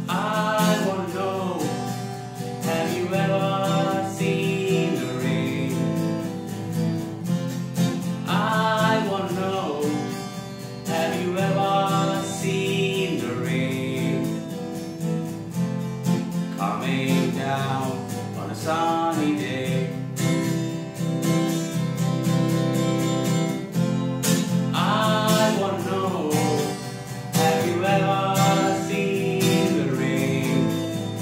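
Acoustic guitar strummed steadily, with a man's voice singing over it in phrases every few seconds.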